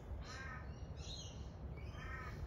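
A crow cawing: two caws about a second and a half apart, with a higher, shorter call between them, over a low steady background rumble.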